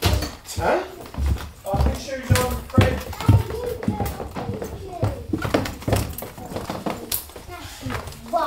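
Footsteps going down wooden stairs: a run of dull thumps, roughly two a second, mixed with a small child's voice.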